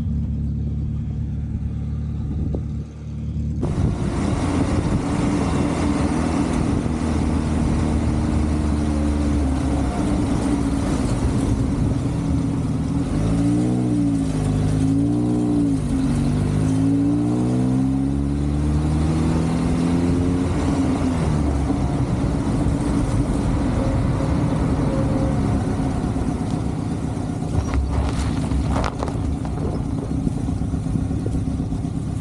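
Volkswagen Passat's engine running as the car drives along a street, picked up by a camera mounted low on the outside of the car, with road and wind noise. From about halfway, the engine note rises and falls several times as the car accelerates and changes gear.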